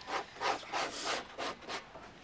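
A blade shaving the hair off a raw goatskin for a bagpipe bag: quick rasping scrape strokes, about four a second.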